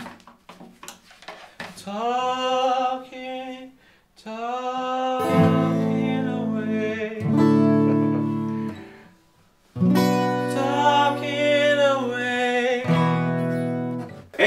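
A man singing short phrases while strumming an acoustic guitar, after a few soft knocks at the start. The voice comes in alone about two seconds in, the chords join a few seconds later, and there is a short break before the last phrase.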